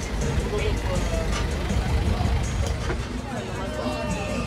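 A minibus taxi's engine running as it drives slowly past close by, a steady low rumble, with people's voices chattering in the background.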